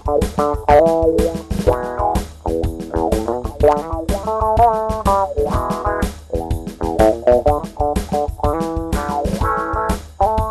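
Guitar played live, a run of quick plucked notes and short phrases, over a steady bass line.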